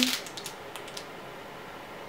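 A few faint crinkles and soft clicks of a plastic snack-bar wrapper handled in the fingers, in the first second, then quiet room tone.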